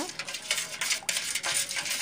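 Spiral coil whisk stirring green agar-agar liquid in a metal pot, the wire clinking and scraping against the pot in quick, irregular strokes as the sugar is stirred in to dissolve.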